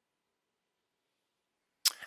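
Near silence, then near the end a single short, sharp sound at the microphone, a quick breath just before speaking.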